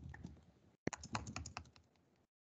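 Computer keyboard typing: a few faint keystrokes, then one sharper tap just under a second in, followed by a quick run of about eight keystrokes.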